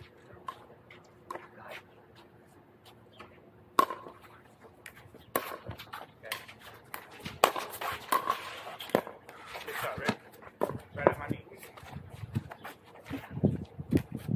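Pickleball paddles striking a plastic ball in a rally: a string of sharp pops a second or two apart, with faint voices in between.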